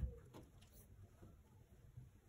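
Near silence: quiet room tone with faint brushing of hands over cloth laid on a table.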